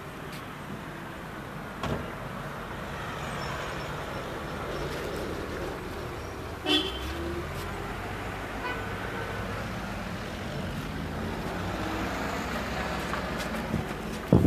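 Motor vehicle engine and road noise, a steady rumble that slowly builds. About seven seconds in, a short sharp sound with a brief tone cuts through.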